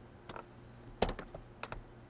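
A handful of computer keyboard key clicks, short and sharp, the loudest about a second in.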